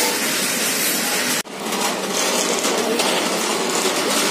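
Steady, even background noise of a busy self-service restaurant counter, broken by a sudden momentary dropout about one and a half seconds in.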